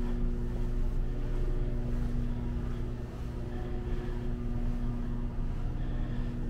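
A steady low machine hum with a buzzing tone, unchanging throughout.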